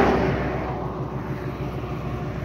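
A passing vehicle's road noise fading away during the first second, over a steady low engine hum.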